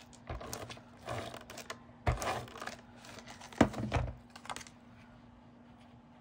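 Cardstock and patterned paper being handled and slid on a desktop: several short rustles and scrapes, with a sharp tap about three and a half seconds in. The handling stops about four and a half seconds in.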